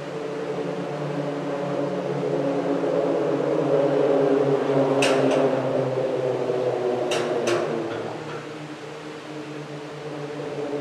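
Humming of car tyres rolling over the Moody Street Bridge's open iron grid deck, heard from beneath the bridge. The hum swells and then fades as a vehicle crosses, with a few sharp clacks about five and seven seconds in.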